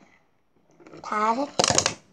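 A child's voice makes a brief wordless vocal sound, followed by a short scratchy rattle or rustle near the end.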